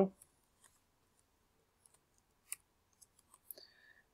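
A few faint, scattered computer keyboard keystrokes and mouse clicks, isolated single clicks with gaps between them, the clearest about two and a half seconds in and a quick run of them near the end.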